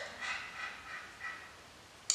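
A baby's high-pitched wordless squeals: a rising call followed by a few short babbling calls in the first second and a half.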